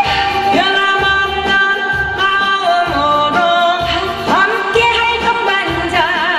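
A woman singing a Korean song live into a microphone over amplified backing music with a steady bass beat. Her voice holds long notes and slides up into some of them.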